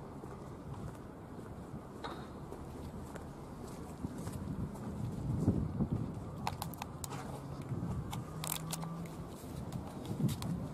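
Low, steady background rumble of a city street, with a few sharp clicks in the second half and a low steady hum joining near the end.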